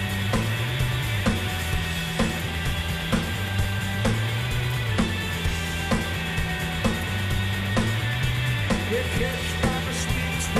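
Live rock band playing an instrumental passage: a steady drum beat with bass and synth, no vocals.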